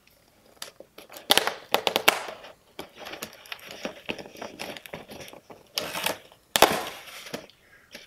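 A corrugated cardboard pallet stacking protector being broken apart by hand along its perforation lines. There are sharp cracking and tearing sounds in two bouts, about a second and a half in and again around six seconds, with rustling of the cardboard being handled in between.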